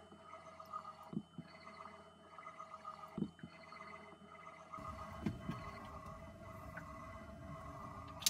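Katadyn PowerSurvivor 40E watermaker's electric pump running with a faint, steady hum, and a few soft knocks. It is in its start-up stage, slowly drawing salt water into the filter housing before any fresh water comes out.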